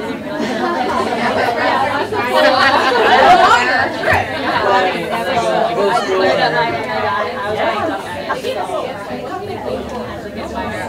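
Indistinct chatter of many overlapping conversations in a large room, several voices at once, loudest about three seconds in.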